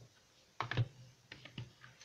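Plastic DVD cases clicking and knocking against each other as they are handled and set onto a stack: a quick cluster of clicks about half a second in, then a few lighter clicks.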